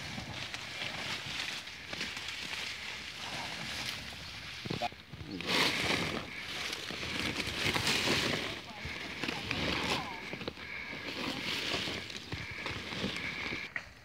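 Dry corn ears being emptied from mesh sacks into a large bulk bag: a noisy pouring rush that comes in surges, loudest about six and eight seconds in.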